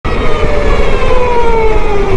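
Electric motorcycle motor whine on the Energica Ego, a pitched hum with overtones that falls slowly and steadily as the bike slows, over low wind rumble.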